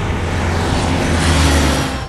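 A drone aircraft flying in low overhead: a rushing roar over a deep rumble that grows louder and cuts off suddenly near the end.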